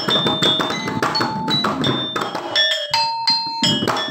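Balinese kendang drums, two-headed and struck by hand and stick, playing quick interlocking strokes, with the small ceng-ceng cymbals on their stand ticking along. The strokes are dense and leave short ringing tones, with a brief lull a little past three seconds in.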